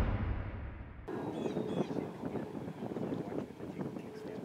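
The low rumble of a music sting fades out, then outdoor ambience takes over suddenly about a second in: light wind with a few birds chirping briefly.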